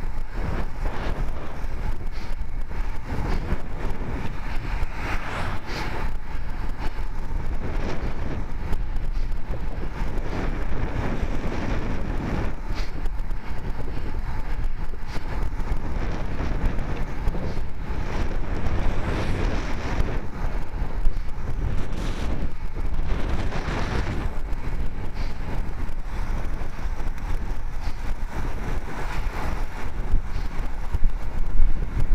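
Steady wind rush on the microphone of a camera mounted on a road bike riding at speed on asphalt, swelling louder now and then, with the hum of the bike's tyres on the road.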